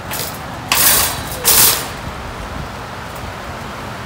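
A metal shopping cart rolling over concrete with a steady low rumble. Two short bursts of hiss come about a second and a second and a half in.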